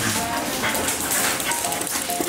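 A dog running across a hard floor, claws and paws scrabbling and clicking rapidly.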